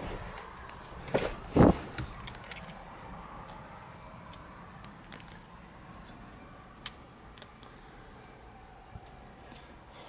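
Handling noise of someone climbing into the driver's seat of a parked Jeep Wrangler with the engine off: two knocks between one and two seconds in, with rustling and light clicks. Then a faint steady cabin background with one sharp click about seven seconds in.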